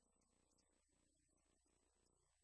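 Near silence: a man's speaking voice barely audible, far below normal level, over a faint steady low hum.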